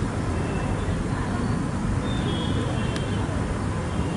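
Steady rumbling background noise, even throughout, with a faint thin high tone about halfway through and a single click near the end.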